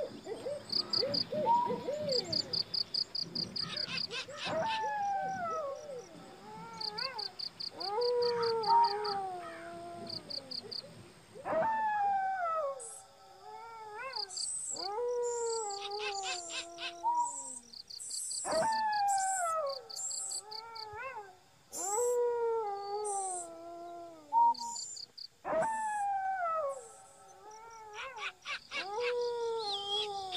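An animal howling: a run of long wail-like calls, each rising briefly and then falling away in pitch, about one every two seconds, with a fast high pulsing chirp beneath.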